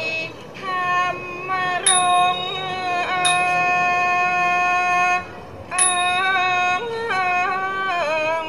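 Thai classical song: a woman's voice holds long notes with sliding ornaments, over the accompanying ensemble. A few bright, ringing strikes of small hand cymbals mark the beat.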